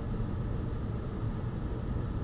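Steady low hum with a faint even hiss and no music: background noise of the room and microphone.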